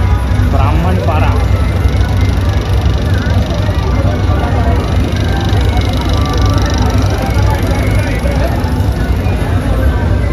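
A loud DJ sound system playing music with a heavy, steady bass, with voices mixed in, clearest about half a second to a second and a half in.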